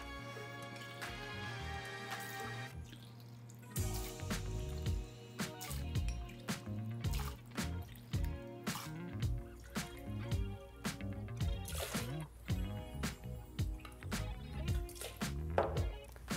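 Background music with a light beat, over mezcal being poured from a glass bottle into a blender pitcher, with small splashing and dripping sounds from about four seconds in.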